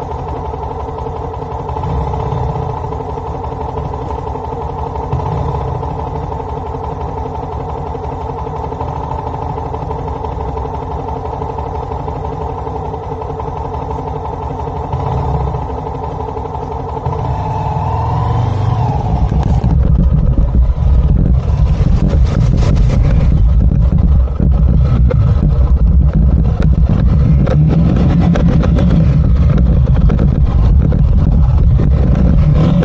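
Motorcycle engine idling steadily for most of the first two-thirds. It then revs up and the bike moves off, the sound becoming louder and rougher as it rides along a bumpy dirt track.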